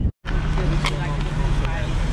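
Road traffic: a steady low engine hum, with a short click about a second in.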